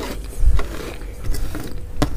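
Close-miked chewing of mansaf: rice and lamb in yogurt sauce. The chewing gives quick wet clicks and smacks, with a louder one about half a second in, and fingers squish rice against a plastic tray.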